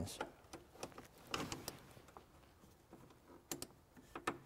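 A few faint, short clicks and scrapes of a metal jumper-cable clamp being handled and pressed against the battery jump post and cross-car brace. No spark is heard: the post is coated and does not conduct.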